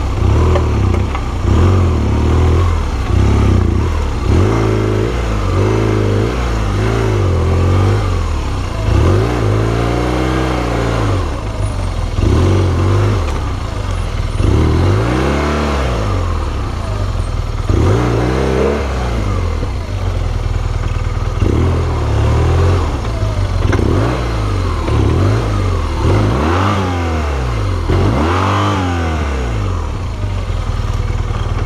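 BMW R1200GS boxer-twin engine at low speed, revved in repeated short throttle blips, each a quick rise and fall in pitch, every two to three seconds.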